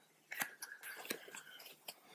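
A cluster of small sharp clicks and rustles from a body moving on a yoga mat, starting about half a second in and stopping just before the end.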